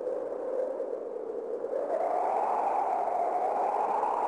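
Ambient drone in a music track: a hazy, breathy band of sound that slides up in pitch and grows louder about halfway through, leading into a chanted song.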